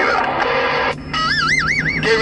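An electronic warbling tone comes through the CB radio's speaker after the received voice breaks off about a second in. Its pitch swings up and down about four times a second over a steady low hum.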